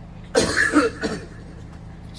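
A man coughing into a microphone, one harsh cough about a third of a second in and a shorter one just after, over a low steady hum from the sound system. He says he has been ill for some days.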